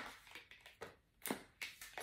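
Tarot cards being handled and pulled from the deck: a few faint, short snaps and slides of card stock, the sharpest a little past halfway.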